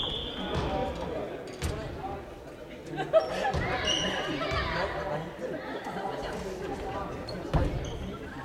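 Badminton play in a large sports hall: a few sharp racket-on-shuttlecock hits and footfalls on the wooden court floor, the loudest about three seconds in and near the end, echoing in the hall, with players' voices in the background.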